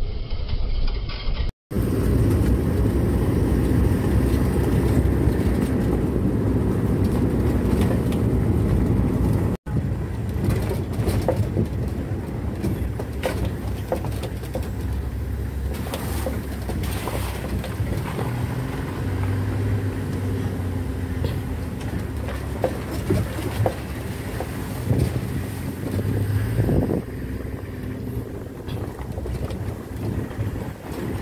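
Ambulance driving, heard from inside the cab: a steady low engine and road rumble with frequent rattles and knocks from the bodywork. The sound cuts out for an instant twice.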